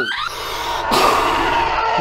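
Science-fiction spaceship engine sound effect: a rising whoosh that bursts into a loud rush about a second in, then runs on steadily with a held tone.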